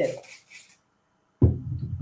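Speech with a short gap: a woman's voice trails off at the end of a word, then about half a second of dead silence, then a voice starts again abruptly.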